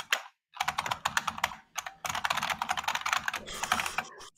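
Rapid typing on a computer keyboard: fast runs of key clicks, with a short break about two seconds in.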